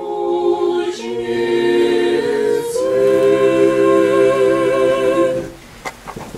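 Small mixed choir of men's and women's voices singing Orthodox church chant a cappella in close harmony, moving through sustained chords. The phrase ends on a long held chord that cuts off about five and a half seconds in.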